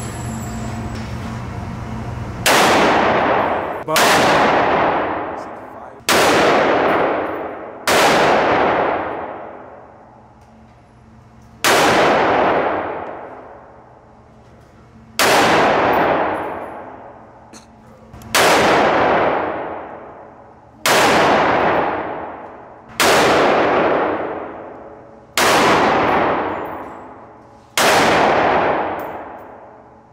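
Eleven single gunshots fired at an unhurried, uneven pace, each with a sharp crack that rings out for a second or two in the reverberant indoor range.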